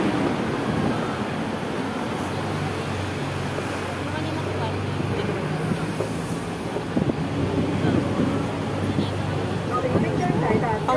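Open-top double-decker tour bus on the move: a steady engine hum under a haze of wind and road traffic noise, with faint voices in the background.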